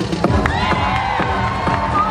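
An audience cheering and whooping over hip-hop dance music with a steady beat. The high, held cheers rise up about half a second in.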